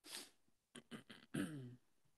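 A person clearing their throat: a sharp breath at the start, then a few quick catches and a short voiced rasp that drops in pitch.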